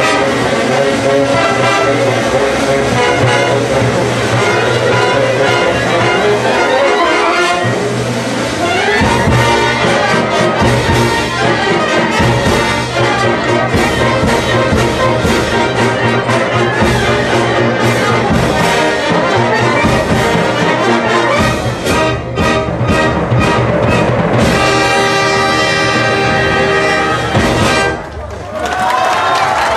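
Live brass band playing at full volume. Near the end a run of short, punched chords gives way to a long held final chord that cuts off as the piece ends.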